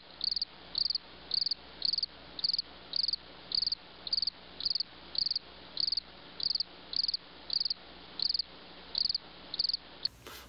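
A cricket chirping in a steady, even rhythm, about two short, high chirps a second.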